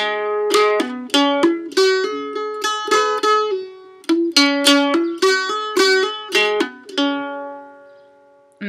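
Mandolin playing a slow Amdo Tibetan dunglen melody note by note, with only about half to two thirds of the notes picked and the rest sounded by hammer-ons and a trill of the fretting finger. The tune pauses briefly on a held note about halfway and ends on a note left to ring out and fade.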